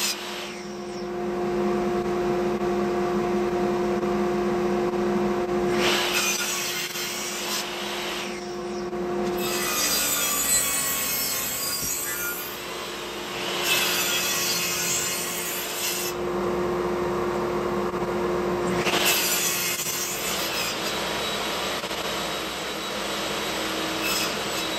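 Table saw running with a steady hum while its blade cuts an oak board held upright in a tenoning jig, cutting tenon cheeks in about four passes of a few seconds each.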